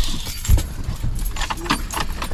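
Handling noise inside a vehicle cab: fabric of clothing or a bag rustling and shifting, with small clicks and clinks and a thump about half a second in.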